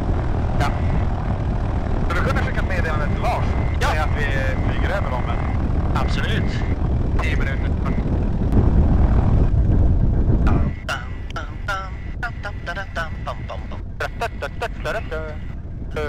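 Piper PA-28's single piston engine running on the ground, a low drone heard inside the cabin. It grows louder about eight and a half seconds in, then drops off abruptly a little later.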